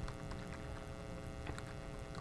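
Spoon stirring gelatin into water in a cup, with a few faint taps of the spoon against the cup, over a steady electrical hum.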